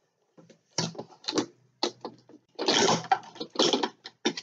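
Plastic housing and lid of a Cuisinart Grind & Brew coffee maker being handled: a string of short knocks and scrapes, the longest and loudest a rub about three seconds in.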